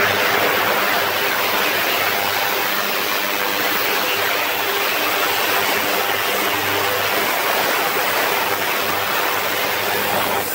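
A 40 kHz ultrasonic cleaning tank running with carburettor parts in cleaning fluid: a steady hiss from cavitation in the liquid, with a low steady hum underneath. The tank quickly gets unpleasant to listen to without ear defenders.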